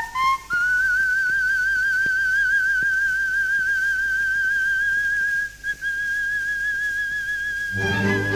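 Coloratura soprano singing a high G6, reached at the top of a quick rising run and held with an even vibrato for about seven seconds, a thin, whistle-like tone with almost nothing beneath it. The orchestra comes back in near the end.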